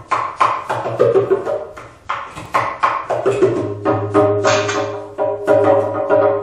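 Djembe played with bare hands, a run of sharp slaps and tones in a loose rhythm. About four seconds in, an electric bass guitar comes in with sustained low notes under the drum.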